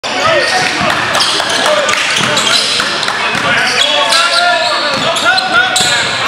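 Basketball being dribbled on a hardwood gym floor, with sneakers squeaking and players' voices calling out during live play.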